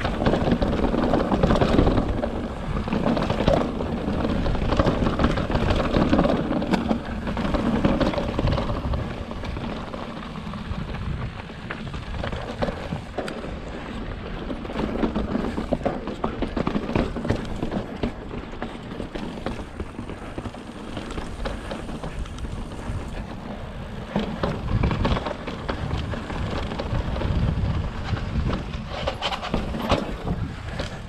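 Fezzari La Sal Peak mountain bike riding over rocky dirt and slickrock: tyres crunching over gravel and stones, with irregular rattles and knocks from the bike, over a low rumble. Louder in the first part and again near the end, quieter in between.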